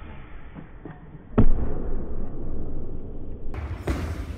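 A loaded barbell with bumper plates dropped onto a lifting platform lands with a loud, heavy thud about a third of the way in, echoing in a large hall. Fainter knocks come before it, and another thud comes near the end.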